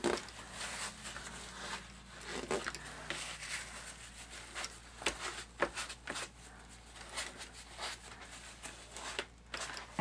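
A paper towel dabbed and pressed onto damp watercolour paper, soft and irregular rustling with light taps, as it blots wet paint off the paper to lift out clouds.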